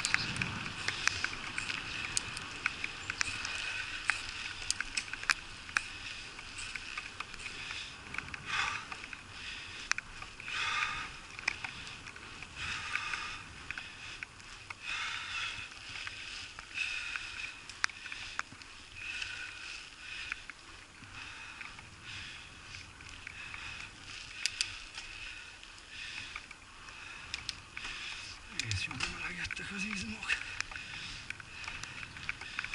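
Bicycle rolling along a wet asphalt path in the rain: a steady hiss of the tyres on the wet surface, with many sharp ticks of raindrops striking the camera, and the rider breathing now and then.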